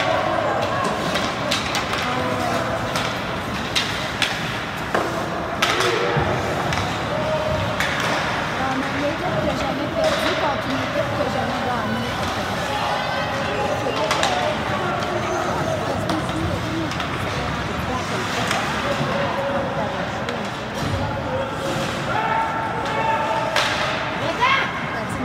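Indistinct voices of spectators and players across a hockey rink, with scattered sharp clacks of sticks on the puck and the ice during play.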